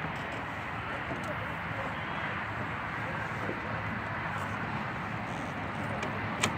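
Steady outdoor background noise, even and featureless, with no distinct events.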